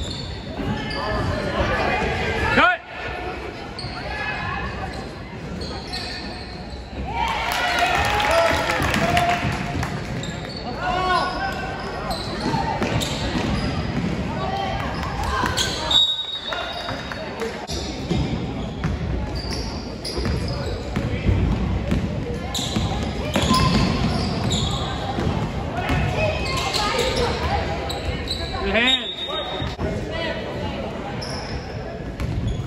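Echoing gym crowd chatter with a basketball bouncing on a hard court. Brief high-pitched tones sound about halfway through and again near the end.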